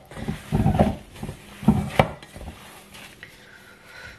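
Gloved hands squeezing and kneading a moist mixture of cake crumbs and melted chocolate in a stainless steel bowl, with a few knocks against the bowl in the first two seconds, then quieter.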